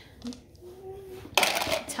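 Small counting cubes being taken off a paper ten-frame and dropped into a bin, with a sudden short clatter about a second and a half in.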